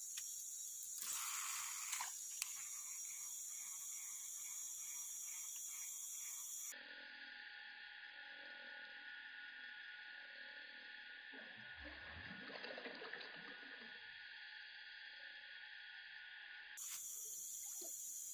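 Faint, steady high-pitched drone of a jungle insect chorus over river ambience. In the middle stretch the sound turns duller and muffled, with a brief low rumble about twelve seconds in, and the insect drone returns near the end.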